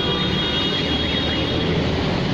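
Steady street traffic noise with a low engine hum.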